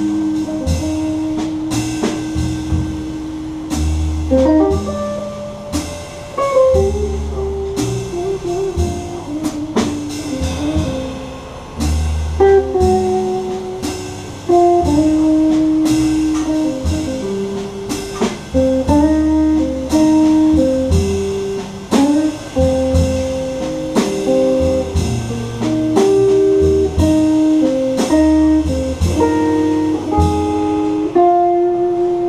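Jazz guitar trio playing a ballad: a red hollow-body archtop guitar plays a single-note melody line over upright double bass notes and cymbal strokes from the drum kit.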